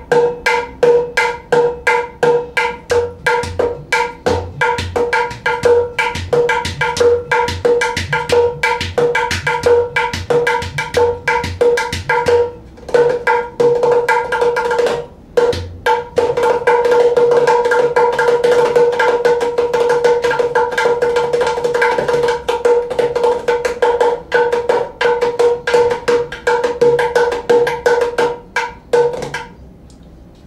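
Cajudoo hand drum (7-inch Professional with a solid exotic-hardwood playing surface) played with the hands and fingers: rapid strokes with a bright, clearly pitched ring, the solid-wood head giving a brighter strike than a plywood one. Deep bass tones are mixed in through the first half, and after two short breaks the playing turns into a fast continuous roll that stops just before the end.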